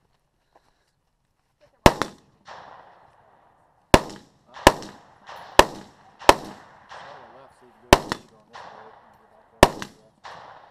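Gunshots from a long gun in a 3-gun match stage: about seven sharp cracks spaced roughly a second apart, starting about two seconds in, each followed by a rolling echo.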